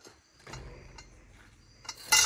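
A few faint, soft metallic clicks over a low rumble, with a sharper click near the end, from a chain-type fence wire stretcher holding tension on smooth fence wire.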